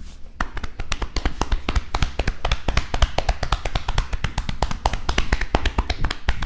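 Massage strikes of hands on a person's back through a shirt: a rapid, uneven run of sharp taps and slaps, several a second.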